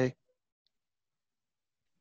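Near silence in a pause between spoken words: a man's word trails off at the very start, then almost nothing, apart from one faint click about half a second in.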